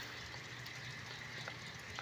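Quiet, faint steady background hiss with a thin high steady tone and no distinct event, apart from one tiny tick about one and a half seconds in.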